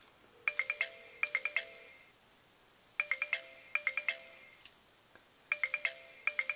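iPod Touch ringing with an incoming Textfree call. A melodic ringtone of quick chiming notes comes in two runs, and the figure repeats about every two and a half seconds, three times.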